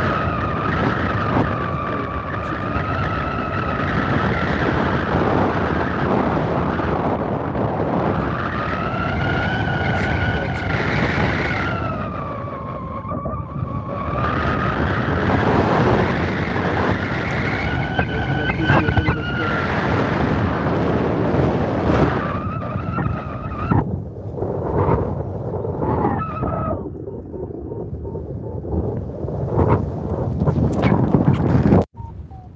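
Heavy wind rushing over a phone microphone in flight, with a whistling tone that slowly rises and falls in pitch. In the last few seconds the wind drops in and out, broken by short knocks of the phone being handled.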